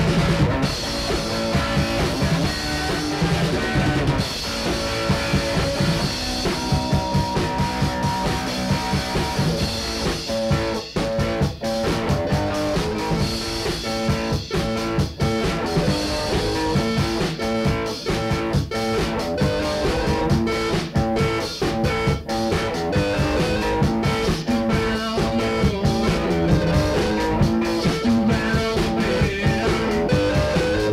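Rock band playing an instrumental stretch with electric guitar and drum kit, a 1980 amateur recording made on a Panasonic tape machine through a 4-track mixer.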